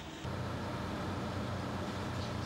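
Concrete mixer running: a steady low mechanical hum that sets in about a quarter of a second in.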